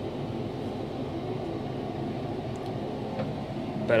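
Steady machinery hum, like a running fan, with several low steady tones and no beeping.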